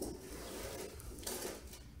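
Faint handling noise: a crocheted yarn piece rustling softly as it is held and turned in the hands, with a slightly louder rustle a little past the middle.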